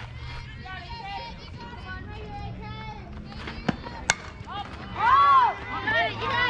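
A softball bat hits the pitched ball with a sharp crack and a brief high ring about four seconds in. Moments later spectators yell loudly. Voices chatter throughout.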